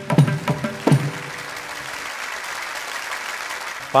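Carnatic concert music ending on a few last mridangam strokes in the first second, followed by steady audience applause.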